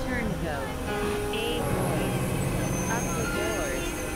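Experimental electronic soundscape: synthesizer drones and held tones with gliding, warbling pitches over a dense noisy bed. A garbled, voice-like sound is woven in, with no clear words.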